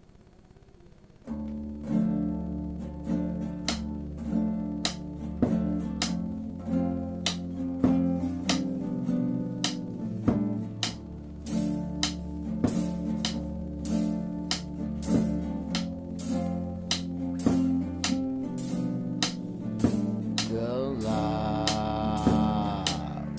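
Instrumental intro of an acoustic band, starting about a second in. Acoustic guitar chords ring over a held low bass line, with sharp, evenly spaced drumstick clicks keeping time. Near the end a higher guitar part with sliding notes joins in.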